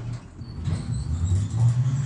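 Low rumbling hum, engine-like, whose low tones shift in pitch step by step, with a few faint high ringing tones above it: urban field recording layered into an electroacoustic montage.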